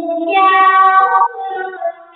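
A song: a high singing voice holding long notes that step up and down in pitch, fading near the end.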